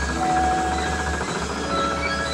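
Live rock band playing an instrumental passage, heard through an audience recording: held lead notes that change every half second or so over a steady bass.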